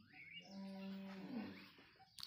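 A Holstein-Friesian crossbred cow in labour lows once, a call about a second long that drops in pitch at the end.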